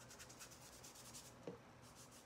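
Faint, scratchy strokes of a paintbrush dragging paint across collage paper, with a light tick about a second and a half in.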